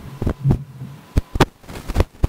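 A handful of short, sharp thumps and knocks at irregular intervals, about six in two seconds, over a low hum in the first second.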